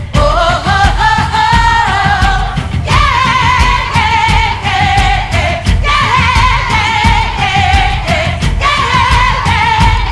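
A song: a woman sings long, held notes in a high voice, sliding between pitches, over a band with drums and bass.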